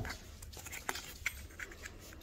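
Faint handling noises: a few soft clicks and rustles as a paper collector's leaflet and a plush toy are handled.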